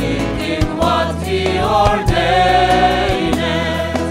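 Mixed choir of men and women singing a sacred song, backed by electric bass, guitar and a drum kit keeping a steady beat.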